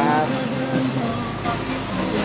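Minivan engine idling, a steady low hum under faint voices, with a low rumble coming in about a second in.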